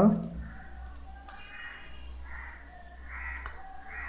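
A few computer mouse clicks, spaced out, over a steady low electrical hum.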